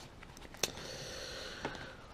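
Faint handling of trading cards being gathered up on a cloth-covered table: a soft tap, a quiet hiss lasting about a second, and another soft tap near the end.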